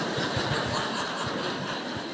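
Lecture audience laughing together, a steady crowd murmur of laughter.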